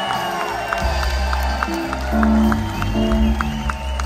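Live rock band playing: held guitar and keyboard notes, with the bass coming in about a second in over a steady ticking beat of about three a second.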